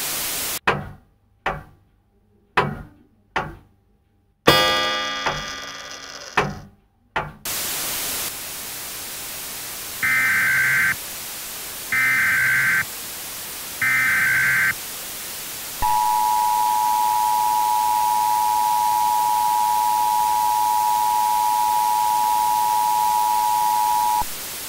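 Broadcast static hiss that cuts out into a run of sharp thuds, each ringing and dying away, before the hiss returns. Then come three one-second bursts of screeching EAS SAME header data tones and the steady two-tone EAS attention signal, which announce an emergency alert.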